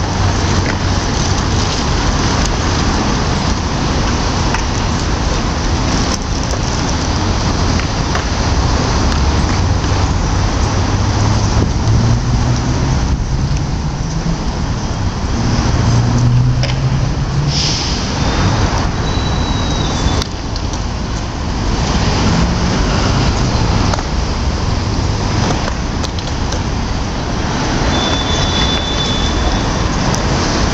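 Steady road traffic noise with a low engine rumble, one vehicle's engine rising in pitch a little before the middle.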